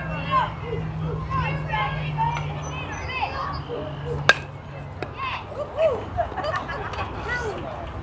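A bat hitting the ball once, a single sharp crack about four seconds in, with spectators' voices calling and shouting around it.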